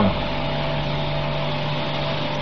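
Steady hiss with a faint low hum and no other events: the background noise of an old tape recording, heard between spoken phrases.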